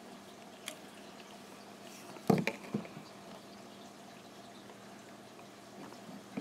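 Quiet handling noises at a fly-tying vise while thread is tied off behind the bead: a few faint clicks and one short, louder knock a little over two seconds in, over a steady low hum.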